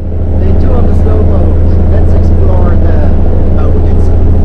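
Loud, steady low drone of the riverboat's engine, with voices talking over it.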